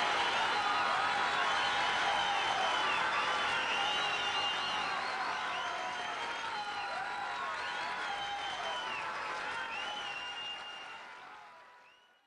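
A crowd applauding and cheering, with shrill whistles rising and falling above the clapping. It fades out steadily over the last couple of seconds.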